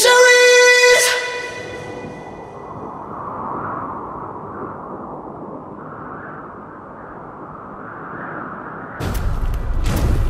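A rock song's last chord rings and cuts away about a second in, giving way to a low rumbling whoosh that swells and eases. Near the end a sudden loud hit with crackling begins, a cinematic impact effect for a cracking, shattering logo.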